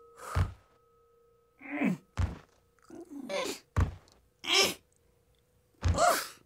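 A cartoon character groaning in short moans that fall in pitch, three or four times, the groans of a worn-out sumo trainee. Four dull thuds fall between the groans, about every second and a half to two seconds.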